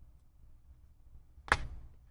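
A single sharp click of a computer mouse button about one and a half seconds in, over a faint low hum.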